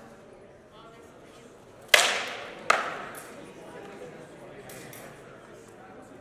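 Two sharp cracks of rattan swords landing blows in heavy armoured combat, about three-quarters of a second apart, the first the louder. Each rings out with an echo in a large hall.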